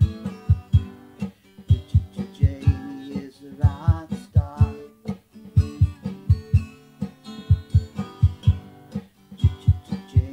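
Acoustic rock song led by acoustic guitar over a steady low beat of about three pulses a second. A wavering melodic line rises above it around the middle.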